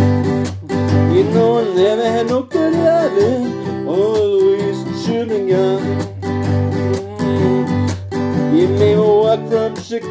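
Acoustic guitar strummed in a blues rhythm, its strings struck hard. Over it a wordless vocal moan bends up and down in pitch.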